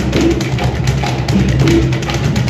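Percussion ensemble playing a steady groove on hand drums, congas among them: dense, rhythmic strokes, several a second, mixed with short pitched drum tones.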